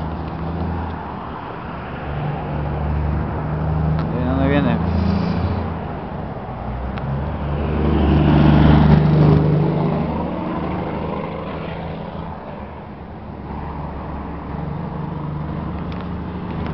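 Road traffic passing on a highway at night: a steady low engine rumble, with one vehicle passing loudest about nine seconds in before fading. A brief voice is heard about four seconds in.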